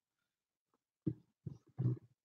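Three short, low vocal sounds, starting about a second in, much quieter than the talk around them.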